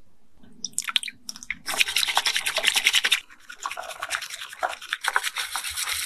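Matcha powder and liquid being whisked by hand in a glass bowl: fast, scratchy strokes of the whisk against the glass, starting about a second in and turning steady and dense.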